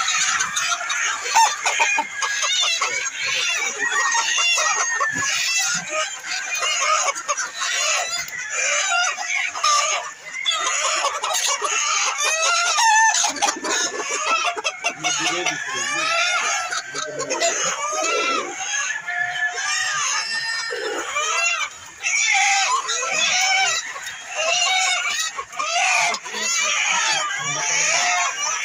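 A crowded flock of hens and roosters clucking and calling without pause, many birds at once, with roosters crowing at times.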